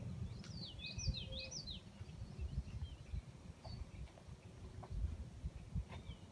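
Songbirds singing outdoors: a quick run of rising and falling chirps about half a second in, then a few scattered calls. Underneath is an uneven low rumble of wind on the microphone.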